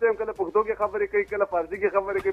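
Speech only: a person talking without a pause. The voice sounds thin, with its upper range cut off, as over a telephone line.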